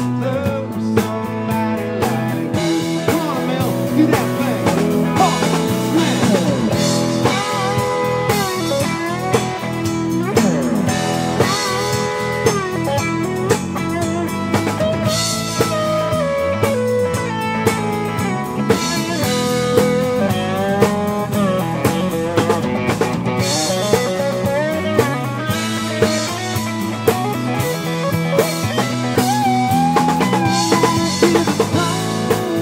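Live rock band playing an instrumental passage: an electric guitar plays a lead line with bending, gliding notes over bass guitar and a drum kit keeping a steady beat.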